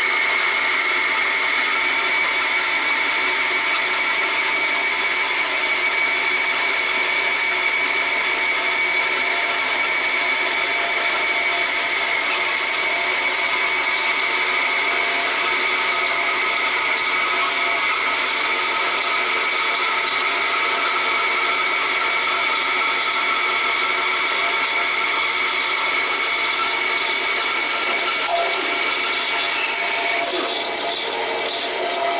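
Bandsaw running steadily while its blade slowly cuts through a wooden block held on a vacuum jig, with a steady whine. The vacuum pump holding the block to the jig runs at the same time.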